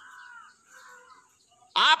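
Faint bird calls in the background: two short, falling calls within the first second, during a gap in a man's speech.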